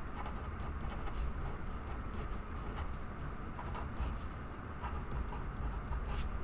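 Sharpie felt-tip marker writing on paper in a run of short, irregular strokes as symbols are drawn out.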